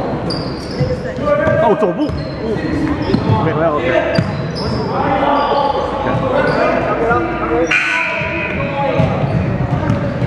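A basketball game on a hardwood gym floor: the ball bouncing, short high sneaker squeaks, and indistinct voices, all echoing in the large hall.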